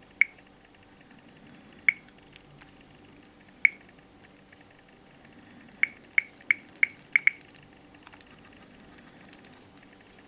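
Samsung Galaxy SL smartphone's touchscreen click sounds as its screen is tapped: three single sharp clicks a second or two apart, then a quick run of six clicks about two-thirds of the way through. A faint steady hum lies underneath.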